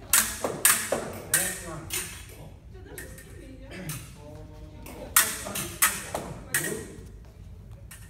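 Fencing blades striking one another in a counter-attack and quarte parry-riposte drill: sharp ringing clicks, about four in quick succession near the start and another run of four a few seconds later.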